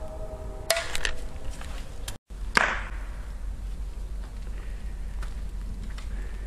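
Burning television set giving a few sharp pops and cracks over a steady low wind rumble, with a brief dropout where the recording cuts about two seconds in.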